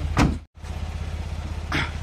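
Small pickup truck's engine idling steadily with an even low pulse, cutting out for a moment about half a second in and then running on.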